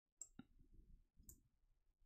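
Faint computer mouse clicks: two in quick succession near the start and a third about a second later, against near silence.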